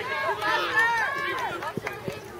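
Sideline spectators' voices calling out during a youth lacrosse game, the words unclear, with one sharp click near the end.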